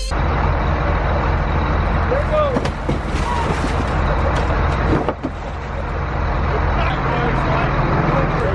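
A diesel tractor engine idling steadily under a rough noise haze, while a car is rolled over by hand: a couple of sharp thuds, one about two and a half seconds in and a louder one about five seconds in, with brief shouts.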